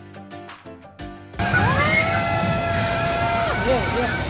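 About a second and a half of background music, then a sudden cut to a small family roller coaster train rolling past close by on its steel track: a loud rumble with a steady high tone held for about two seconds, which bends in pitch near the end.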